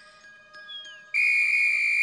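Soft, tinkling lullaby-like music, cut through about a second in by one loud, steady whistle blast lasting about a second, a wake-up call that startles the sleeper.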